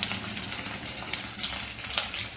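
Sliced onions and green chillies frying in hot oil: a steady crackling sizzle with a few sharp pops, the loudest near the end.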